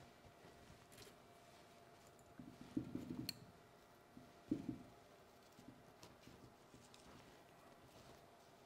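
Faint handling sounds from working on a small potted pine bonsai by hand: two soft rustling knocks about three and four and a half seconds in, with one sharp click at the first, otherwise near silence.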